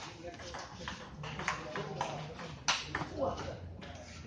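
Table tennis rally: a celluloid ball clicking off paddles and the table in a quick, even series of sharp ticks. The loudest strike comes about two and a half seconds in as the point ends, followed by people's voices.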